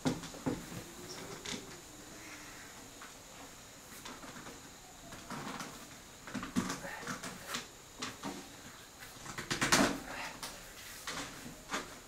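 Knocks, bumps and rubbing from a vinyl-covered wooden cabinet being forced into a very tight pressure fit, with a brief squeak near the start and the loudest knock about ten seconds in.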